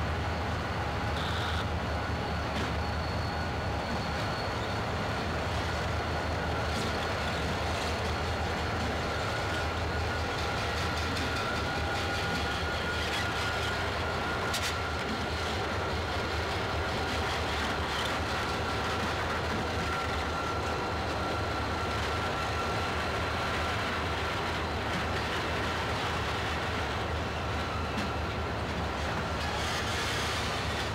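Diesel locomotive running steadily while freight cars roll past on the next track, with a faint steady whine and occasional clicks from the wheels.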